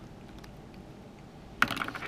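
Quiet room tone, then about a second and a half in a quick run of light clicks and rustles from hands handling sheets of paper on a desk.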